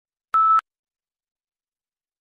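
The exam's recording-start beep: a single short, steady tone, about a quarter second long, signalling that the microphone has opened and reading should begin.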